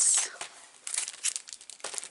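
Clear plastic wrapping on a large scrapbook album crinkling as the album is handled and laid down. There is a loud rustle at the start, then lighter scattered crackles about a second in.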